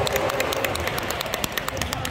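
Rapid, even hand clapping from spectators at a basketball game, about seven sharp claps a second, echoing in a gym hall.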